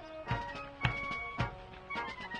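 Fifes and drums of a colonial-style fife and drum corps playing a march: a high fife melody over a steady drum beat of about two strikes a second.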